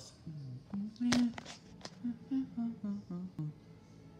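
A person's voice humming a string of short notes that step up and down in pitch, breaking into an 'oh' and a laugh near the end.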